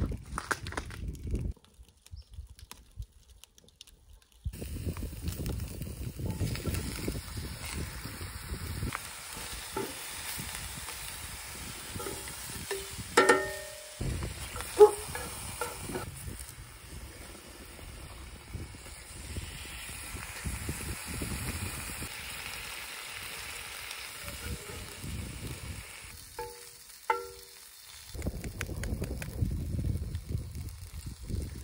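Sausages, bacon and vegetables sizzling as they fry in a cast iron skillet on a wood-fed rocket stove. A few sharp, ringing knocks come about halfway through and again near the end.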